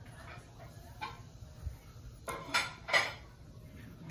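Graphite pencil scratching across drawing paper in a few short strokes as ellipses are sketched freehand, the two strongest strokes coming close together in the second half.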